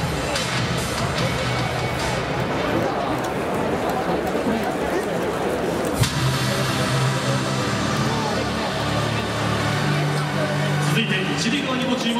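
Stadium PA music over crowd noise, echoing in a large domed stadium. About six seconds in there is a sharp thump, and the music changes to steady low sustained notes.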